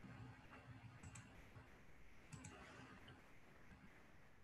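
Near silence with a faint low hum and a few faint sharp clicks: one about a second in and two close together a little over two seconds in.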